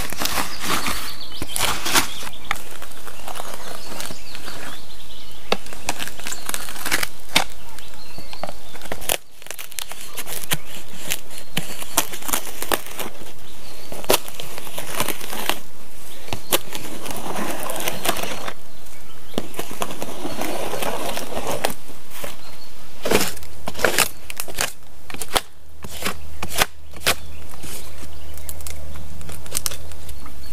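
Birch bark being pried and peeled away from the trunk, with a run of dry crackling, snapping and rustling as the sheet comes loose and is worked around the tree.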